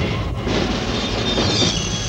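TV station-ident soundtrack: a loud, dense rush of noise layered with music, with a few held tones coming through near the end.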